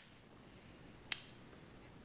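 Ganzo G719 automatic knife being folded closed: one light metallic click about a second in.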